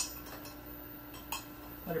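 Teaspoon stirring sugar into a mug of tea, clinking against the side of the mug twice: sharply at the start and again more lightly about a second and a half in.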